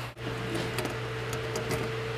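A steady low hum with a steady higher tone that begins just after a brief drop-out near the start, and a few faint ticks: background room noise with no distinct event.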